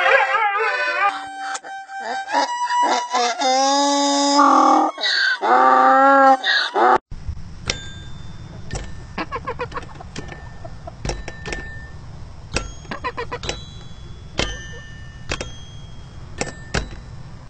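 A dog's wavering howl ends about a second in. A violin then plays held notes, and a donkey brays loudly along with it until about seven seconds in. After a cut, a quieter stretch of sharp clicks and short high ding-like tones follows.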